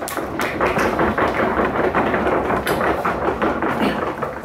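Audience applauding: dense, steady clapping that begins to die away near the end.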